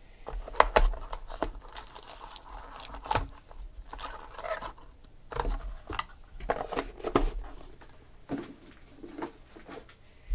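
Trading-card box being unpacked by hand: cardboard inserts lifted out and foil-wrapped card packs handled and set down, a string of sharp knocks and taps with crinkling rustles between them.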